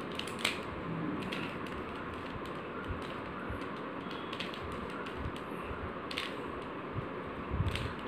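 Gold mirror cube's layers being twisted by hand: scattered light plastic clicks and clacks, a few at a time, over a steady hiss.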